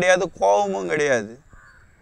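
A man's voice, with a bird calling over it in a harsh, cawing way.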